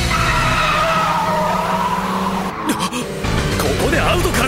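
Race car's tyres squealing in a hard high-speed corner, the squeal slowly falling in pitch over the steady engine, breaking off about two and a half seconds in.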